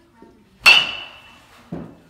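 A baseball bat strikes a ball with a sharp crack and a ringing tone that fades over most of a second. A duller thump follows about a second later.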